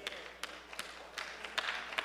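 A few scattered hand claps from the congregation: about half a dozen sharp, irregular claps.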